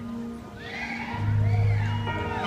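Live band playing a quiet, slow intro with long held notes, recorded from the audience, a low note coming in just over a second in. Over it, a few high rising-and-falling cheers or whistles from audience members.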